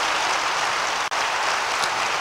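Audience applauding steadily, with the sound cutting out for an instant about a second in.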